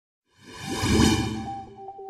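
Whoosh sound effect for an intro logo animation: it swells in about half a second in, is loudest around one second and fades away. The first soft notes of an electronic intro jingle come in near the end.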